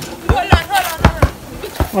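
Basketball being dribbled on an outdoor court: about five bounces at an uneven pace.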